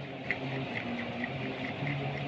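Faint small clicks and ticks of a screwdriver working the screw terminals of a wall switch, over a low background hum.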